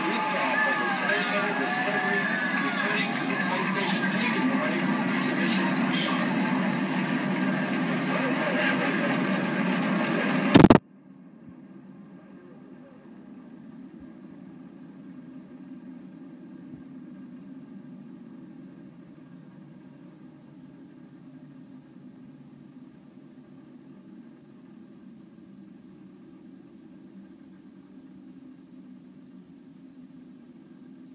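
Space Shuttle launch broadcast playing through computer speakers: the rocket roar of liftoff with a voice over it. It cuts off suddenly with a click about ten seconds in, leaving only a faint steady hum.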